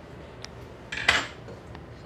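Steel kitchen tongs set down on the countertop: a light click, then about a second in a short metallic clatter with a brief ring.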